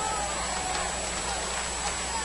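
Steady ballpark crowd murmur between pitches, heard as a low even background through a radio broadcast feed, with a faint steady high tone.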